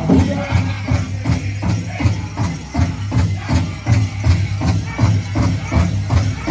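Powwow drum group playing a Grand Entry song: a big drum struck in a steady beat of about three strokes a second, with the group's singing under it.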